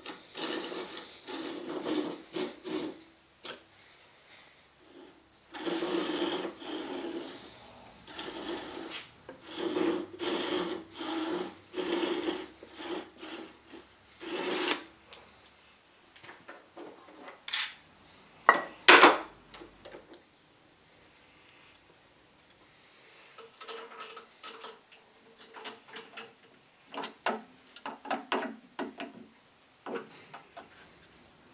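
Fine-toothed backsaw cutting through a small clamped wooden piece, in runs of quick rasping strokes with short pauses. Partway through come a few sharp knocks of metal clamps being handled, then lighter scraping strokes near the end.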